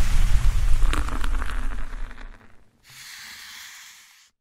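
Intro sound effect for a smoke reveal: a loud, deep rush of noise with a few crackles that dies away about two and a half seconds in, followed by a softer hiss near the end.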